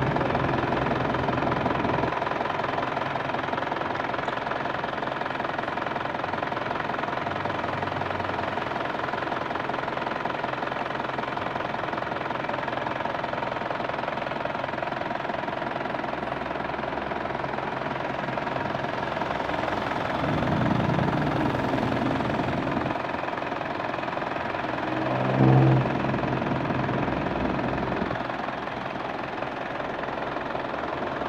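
Isuzu Panther diesel engine running steadily at idle with the radiator cap off, as during a coolant flush. About 25 seconds in, a brief louder hum stands out over the engine.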